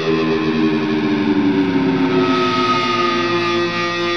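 Rock music: a distorted electric guitar with effects holding long sustained notes, one of them gliding slightly upward about halfway through.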